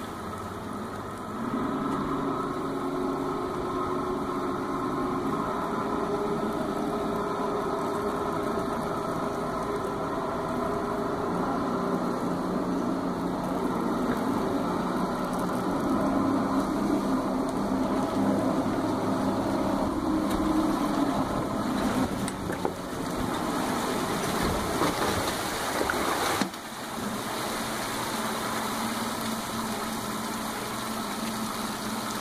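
A tow boat's engine running steadily under load as it pulls on a line, its pitch shifting a little now and then. About 26 seconds in the sound drops suddenly to a quieter steady hum.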